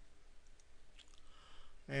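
A faint computer mouse click about a second in, over a low steady room hum.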